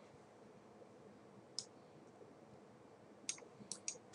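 Near silence broken by faint, sharp clicks: one about one and a half seconds in and three close together near the end.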